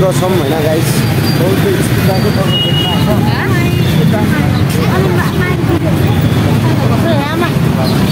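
Busy city street ambience: a steady low rumble of traffic under the voices of people talking around.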